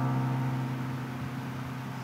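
Instrumental music: a held keyboard chord slowly fading.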